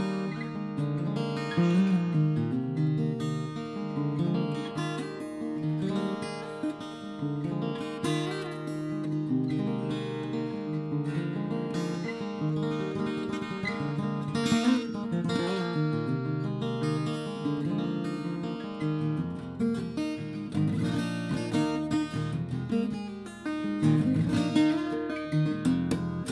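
Ibanez AEG10 acoustic-electric guitar in DADGAD tuning played fingerstyle through a small 15-watt amp: picked patterns over ringing open-string drones, with occasional strums.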